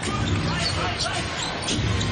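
Basketball being dribbled on a hardwood court, a run of repeated bounces.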